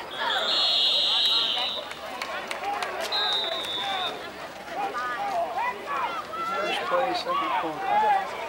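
Football referee's whistle blown twice: a long blast beginning about half a second in and lasting just over a second, then a shorter, weaker blast about three seconds in, blowing the play dead after the tackle. Nearby spectators talk throughout.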